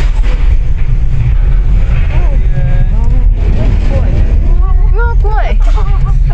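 Steady low rumble inside a ropeway gondola cabin as it moves out of the station and over the trees. High-pitched voices talk over it from about two seconds in.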